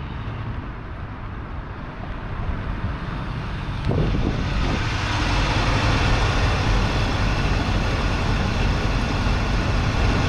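A 1986 Chevrolet C10 pickup's 305 cubic-inch V8 running as the truck drives up, growing louder over the first few seconds and then staying loud and steady from about four seconds in.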